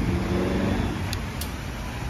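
An engine idling steadily, a low even hum, with two light clicks just past a second in.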